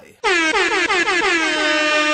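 Loud air-horn sound effect blaring for about two seconds, starting a quarter second in, its pitch dipping and wobbling several times a second. It serves as a stinger flagging a keyword.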